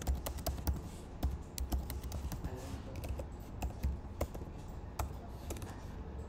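Typing on a computer keyboard: uneven keystroke clicks, a few a second, with short pauses between bursts.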